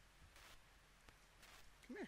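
Near silence: a few faint soft rustles, with one short, low voice-like sound right at the end.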